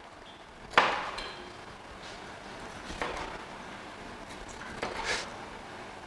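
Kitchen knife cutting a green pepper on a cutting board: one sharp knock of the blade on the board about a second in, then a few soft cuts.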